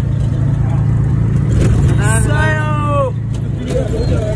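A three-wheeled rickshaw running while being ridden in, a steady low drone of motor and road rumble heard from on board. About halfway through, a person's voice calls out for about a second, falling in pitch at the end.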